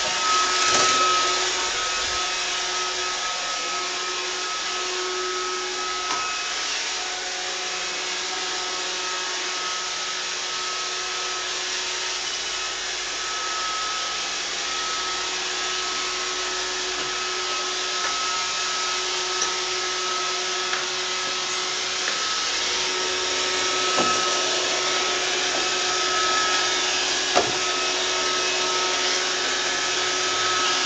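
iRobot Roomba robot vacuum running on a tile floor: a steady whirr of its vacuum motor and brushes, with two held hum tones, one low and one higher, on top. A few short, sharp knocks come near the end.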